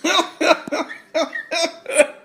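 A man laughing in about five short voiced bursts.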